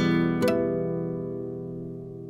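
Closing music: a guitar chord struck twice, about half a second apart, then left ringing and slowly fading.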